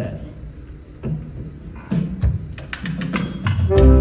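A jazz band getting ready to play: a few scattered low notes and a run of light clicks, then the band, with baritone saxophone, clarinet, trumpet and banjo, strikes up loudly near the end.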